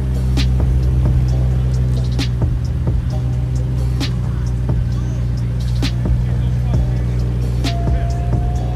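2019 McLaren Senna's twin-turbo V8 running steadily at low speed as the car rolls in, under background music with a regular beat.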